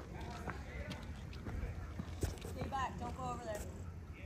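Faint voices talking at a distance, clearest about three seconds in, over a low steady street background. A few light taps and knocks, footsteps and phone handling, run through it.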